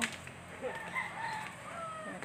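A faint, drawn-out bird call that wavers in pitch, starting about half a second in and lasting over a second.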